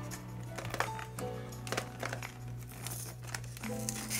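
Cardboard box being handled and pried open by hand, with light crinkling and scratching, over background music with a steady bass note.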